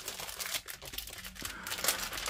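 Clear plastic packaging bag crinkling as it is opened and handled, with soft rustles and a louder crinkle near the end.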